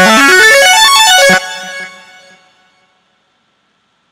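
Sylenth1 software synthesizer playing a bright preset: a fast run of notes climbing and then falling, cut off after about a second and a half. A tail fades out over the next second.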